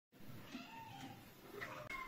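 Cats meowing faintly, a few short calls.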